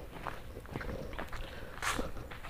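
Footsteps on a concrete path strewn with dry leaves: quiet, irregular steps, with one louder, sharper step near the end.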